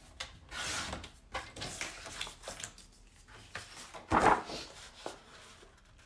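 Sheets of cardstock and a plastic template being handled and slid across a desk: a run of irregular paper rubbing and scraping, with one louder scrape about four seconds in.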